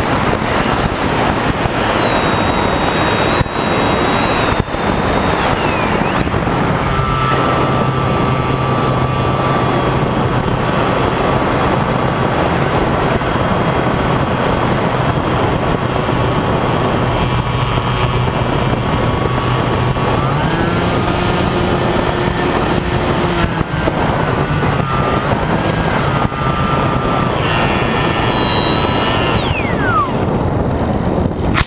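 Brushless electric motor and propeller of a HobbyKing Bixler RC glider whining under throttle, heard through heavy wind rush on the onboard camera. The motor's pitch steps up about two-thirds of the way through, shifts a few times, then falls away sharply near the end as the motor spins down.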